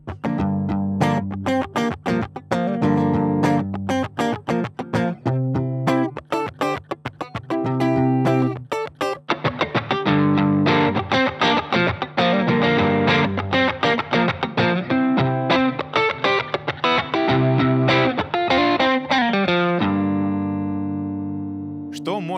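Fender Stratocaster-style electric guitar recorded direct through an audio interface's instrument input. For about the first nine seconds it plays strummed chords with short breaks, recorded dry with no processing. The same playing then continues with effects processing added, denser and more sustained, and ends on a chord left to ring out and fade.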